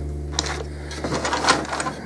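Light clicks, knocks and scraping as the plastic knob on a T-bolt is turned and the MDF router-table fence is shifted along its aluminium T-track.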